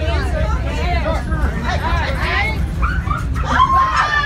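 Passengers talking and exclaiming over one another in a railway coach, with a high rising cry about two seconds in, over a steady low rumble.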